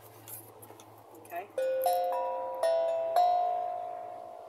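Small steel tongue drum struck with a mallet: a few single notes about half a second apart, each ringing on and slowly fading into the next.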